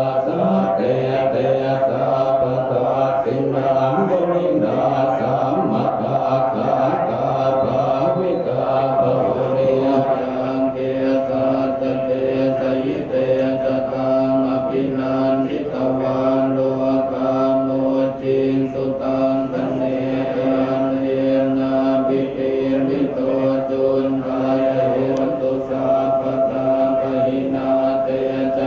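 Thai Buddhist monks chanting together in unison: a steady, droning recitation that runs on without pause.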